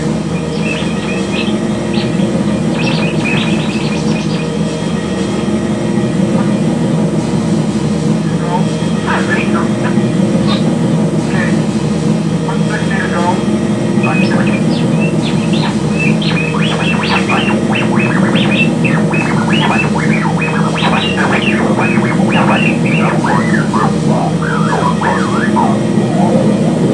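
Experimental drone music: a steady, layered low drone under a scatter of short, high chirping figures that grow dense from about a third of the way in.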